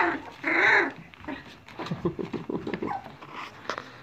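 A litter of two-and-a-half-week-old standard poodle puppies whimpering and squeaking, with one louder cry about half a second in, then many short, quieter squeaks and grunts.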